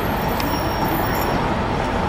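Steady city traffic noise, a continuous rumble with no distinct events.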